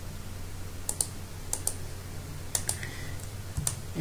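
A computer mouse button clicking about four times, each click a quick press-and-release pair, over a faint steady low hum.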